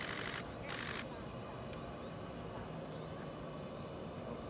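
Camera shutters firing in two short rapid bursts within the first second, then a fainter steady background with distant voices.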